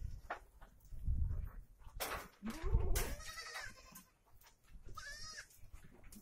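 Osmanabadi goats bleating in a pen: one call of about a second starting a little over two seconds in, and a shorter bleat around five seconds in, over low rumbling and a few knocks.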